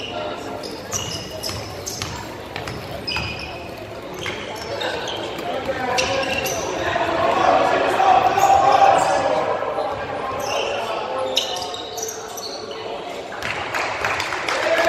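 Basketball being dribbled on a hardwood gym floor, with short sneaker squeaks and spectators' voices echoing in the hall; the crowd noise swells in the middle.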